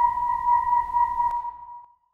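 Eerie film-score drone: a single sustained high tone, slightly wavering, over a low rumble, fading out to silence near the end.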